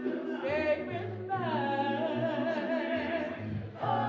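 Mixed church vocal group singing together, with several voices gliding between held notes. The singing grows louder and fuller just before the end.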